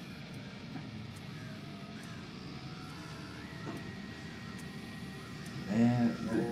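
Low, dark rumbling drone of a horror-style soundtrack passage, with a faint steady high tone joining about three seconds in. A loud voice comes in just before the end.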